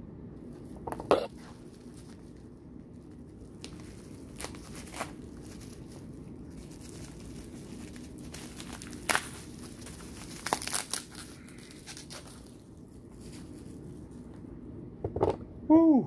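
Bubble-wrap packaging being handled and pulled off by hand: crinkling and rustling on and off, with a few sharp crackles, busiest about nine to eleven seconds in.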